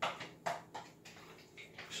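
A few short scraping, handling sounds of a spoon mixing raw chicken pieces with yogurt in a glass bowl: one at the start, another about half a second in, and a few more near the end.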